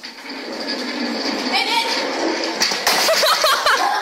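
Indistinct voices over a steady background hiss, the voices coming in about a second and a half in.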